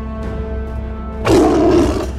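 Background music, broken about a second and a quarter in by a loud growling roar lasting about half a second: a vampire's snarl.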